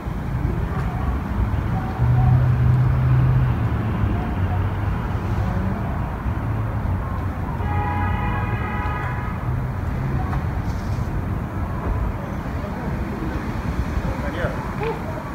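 Steady street traffic noise, a low rumble of passing vehicles. About eight seconds in, a steady pitched tone sounds for about a second and a half.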